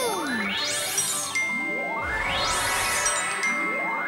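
Magic sparkle sound effect: shimmering chime glissandos sweeping upward, twice in full with a third starting near the end, after a short falling slide at the start.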